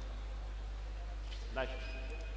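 Steady low hum of a sports hall's background noise, with one short voice call near the end.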